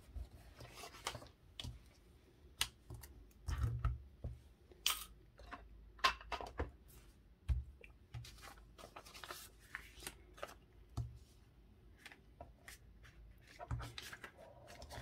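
Hands handling paper and card: intermittent rustling, sliding and short crinkles and taps as a handmade paper journal's pieces are pressed flat and its pages turned.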